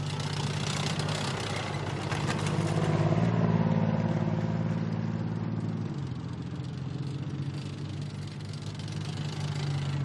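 Engines of armoured fighting vehicles running as they drive past close by, with a rough noisy wash over the first few seconds. The engine sound is loudest about three to four seconds in, then the note drops lower about six seconds in and carries on steadily.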